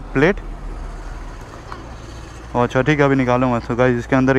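A man talking, broken for about two seconds by steady background road-traffic noise.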